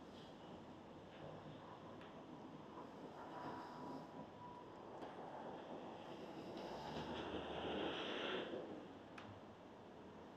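Faint road traffic noise, with a vehicle passing that swells to its loudest about eight seconds in and then fades.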